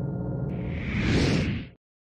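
Intro-music sting: a whoosh sound effect swells up about half a second in over steady low music, then everything cuts off suddenly near the end.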